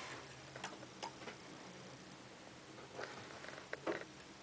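Faint, scattered light clicks and scratches of movement in a chinchilla cage, with a small flurry near the end. The sounds come from chinchillas and a hand moving on wood-shavings bedding and a wooden hide house.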